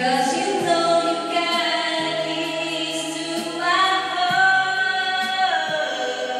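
A small group of people singing together unaccompanied, holding long notes that change pitch a few times and slide down near the end.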